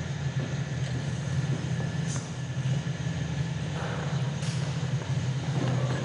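A steady low rumble with a hiss over it, starting abruptly and running on unchanged, like a sound cue played over a stage blackout. A few faint clicks sound over it.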